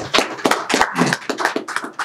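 A small group applauding: irregular, overlapping hand claps from a few people.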